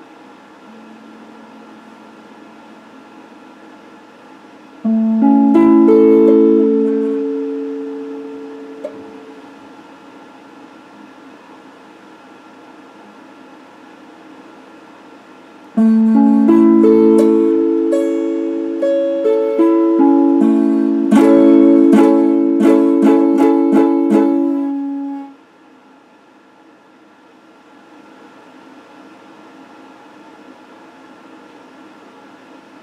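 Electric guitar: a chord struck about five seconds in and left to ring out, then a longer run of chords and single notes from about the middle that is cut off abruptly near the end. A faint steady hum runs underneath.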